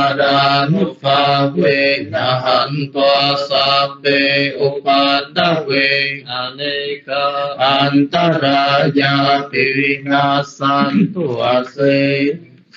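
A male voice chanting a Buddhist text in a steady, melodic recitation tone, holding each syllable and pausing briefly for breath between phrases.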